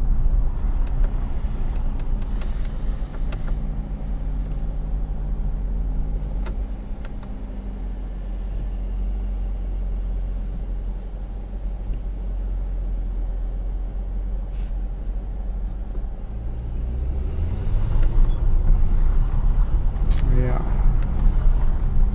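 Mercedes-AMG E63S twin-turbo V8 heard from inside the cabin, running low and steady with road rumble in slow stop-and-go traffic. Near the end the engine note rises and grows louder as the car pulls ahead.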